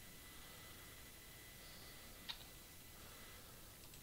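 Near silence: faint room tone, with a single short click a little past halfway.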